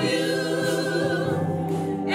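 Gospel choir singing, holding one long note with vibrato, with a break at the end of the phrase.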